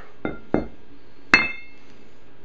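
Steel weight-distributing hitch shank being flipped over by hand on a concrete floor: two light knocks, then one loud metal clank with a short ring a little over a second in.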